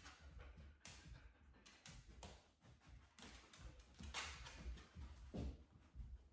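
Near silence with a few faint, scattered ticks and rustles from a dog moving about on a hard kitchen floor while it searches for a scent.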